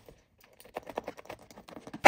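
Utility knife blade cutting through a shoe's textile upper: a fast run of faint small clicks and snicks that starts about halfway in.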